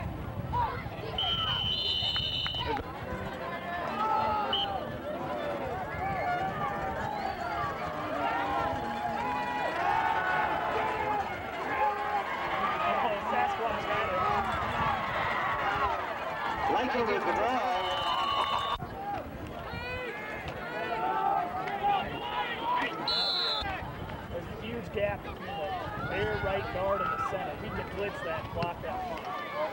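Crowd of football spectators on the sideline, many voices talking and shouting over one another, busiest through the middle as a play runs. Short, high, steady whistle blasts sound near the start, about two-thirds through, and again a few seconds later, typical of a referee's whistle.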